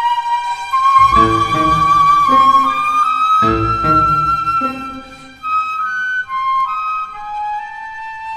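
Concert flute playing a slow, sustained melody over a string orchestra and piano. The accompaniment comes in with full chords about a second in and again near the middle, then thins out, leaving the flute stepping down to a lower held note.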